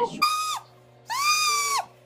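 A woman's shrill, shocked cry of "my god!" in two drawn-out syllables, the second longer and falling in pitch at its end.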